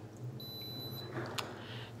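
Digital oral thermometer giving a high-pitched electronic beep of under a second, signalling that the temperature reading is finished. A light click follows shortly after.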